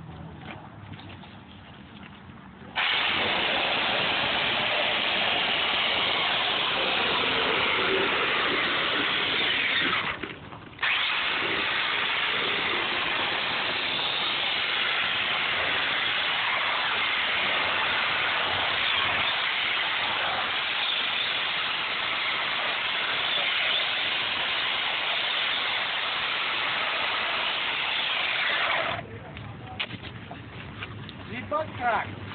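Corded electric chainsaw running and cutting into polystyrene foam, a loud steady buzz. It starts about three seconds in, stops for under a second around the ten-second mark, then runs again until shortly before the end.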